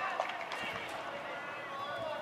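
Players' voices shouting and calling out during a tackle on a football field, with a few dull thumps of feet and bodies.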